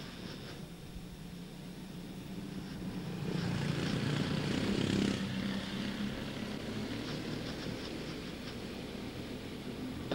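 A pack of quarter midget race cars with single-cylinder Honda 160 engines running at caution pace, their drone swelling about three seconds in and peaking around five seconds as the field passes, then holding steady.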